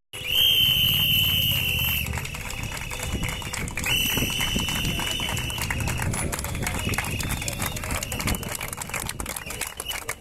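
Two long shrill blasts of a whistle, each about two seconds long, the second starting about four seconds in, over the noise of a marching crowd.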